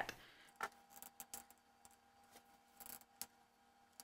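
Near silence: room tone with a few faint, short clicks spread through it.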